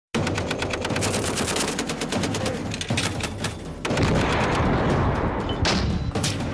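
Belt-fed machine gun firing long automatic bursts, about ten shots a second, with a short break about three seconds in; from about four seconds the fire turns into a denser, heavier rumble with one sharp shot near the end.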